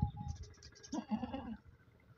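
A lamb bleats once, briefly, about a second in, after a low thump at the very start.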